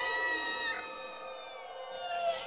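A single drawn-out, meow-like animal cry with a rich stack of tones. It glides slowly down in pitch and fades, and a second, shorter cry starts near the end.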